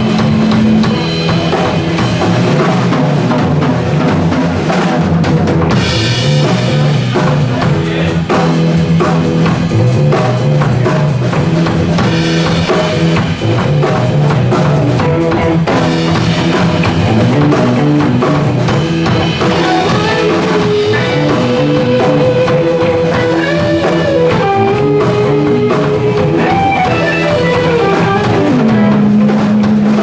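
Live rock band playing an instrumental jam on electric guitars, bass and a drum kit, with a steady drum beat throughout. In the second half a lead guitar holds long notes and slides between them.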